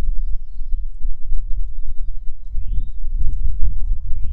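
Wind buffeting the microphone as a heavy, uneven low rumble, with a few faint bird chirps over it, one rising and falling call about two and a half seconds in.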